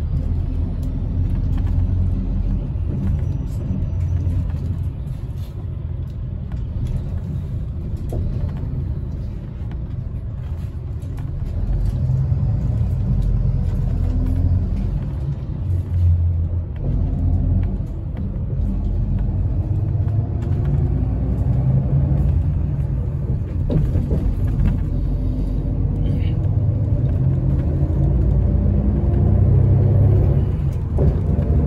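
Bus engine and tyre rumble heard from inside the moving bus's cabin, a steady low drone that grows louder about twelve seconds in, with the engine note rising and falling in the second half.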